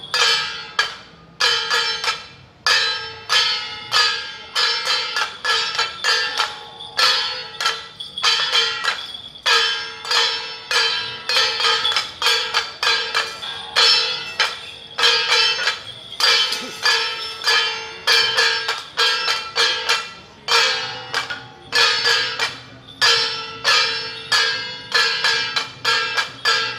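Temple-procession metal percussion: gongs and cymbals beaten over and over in a quick, driving rhythm, ringing between strokes, with a few brief breaks. It is the marching and dance beat for a jia jiang (temple general) troupe.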